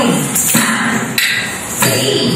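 Bharatanatyam adavu accompaniment: a few sharp percussive strikes on the beat, with rhythmic vocal syllables chanted between them.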